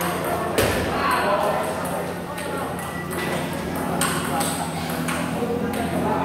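Celluloid-type table tennis ball struck by paddles and bouncing on the table during a rally: a few sharp knocks, the loudest about half a second in.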